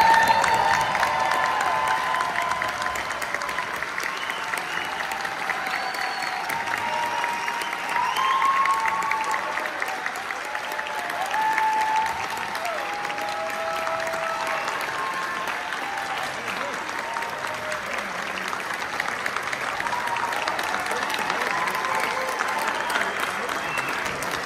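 Audience applauding and cheering, with shouts and voices over the clapping, loudest at the start.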